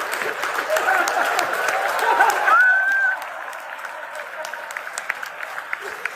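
Audience applauding, loud and dense for the first two and a half seconds, then thinning to scattered claps, with a few voices among it.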